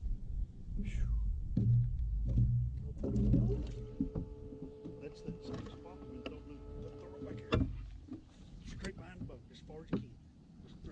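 A bass being fought beside a fibreglass bass boat: low thumps and water noise as the fish jumps and thrashes, then a steady hum for about four seconds that ends with a sharp knock.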